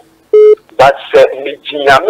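A short electronic beep about a third of a second in, followed by a caller's voice heard over a telephone line.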